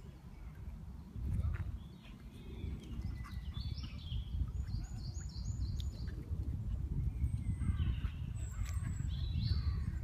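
Small wild birds singing: short, quick chirps and whistles, in a run a few seconds in and again near the end. Under them is a steady low rumble of wind on the microphone.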